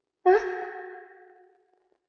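A woman's voice: one drawn-out exclamation that starts suddenly about a quarter second in, scoops briefly up in pitch, then holds and fades away over about a second.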